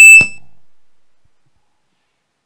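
A loud, high-pitched steady tone breaks off with a click a fraction of a second in, then dies away over about a second into silence.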